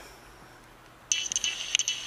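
A steady, high electronic tone with rapid clicking through it starts about a second in, after a quiet moment of room tone.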